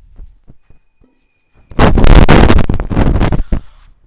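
Liquid nitrogen flash-boiling on contact with hot water in a plastic trash can: a few light clinks, then a sudden, very loud rushing burst about two seconds in that lasts under two seconds and dies away.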